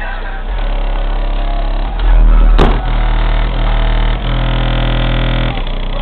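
Re Audio MX 12-inch subwoofer in a ported box tuned to 36 Hz playing bass-heavy music inside a car, heard loud from outside the body. The deep bass swells loudest about two seconds in, and a single sharp knock comes just after.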